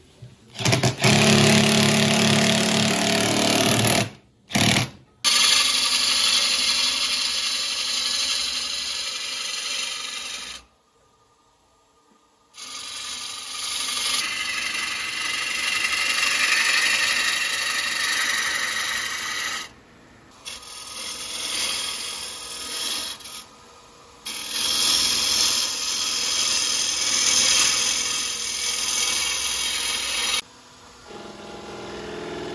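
A cordless drill drives screws to mount a faceplate on a sapele bowl blank, loudest in the first few seconds. Then a turning tool cuts the spinning sapele blank on a wood lathe, a steady hissing cut heard in several stretches broken by abrupt edits and a short near-silent gap.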